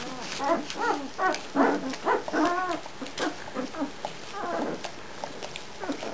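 Nine-day-old German shepherd puppies squeaking and whimpering while they nurse, as the litter jostles for teats. It is a rapid string of short squeaks that thins out in the second half.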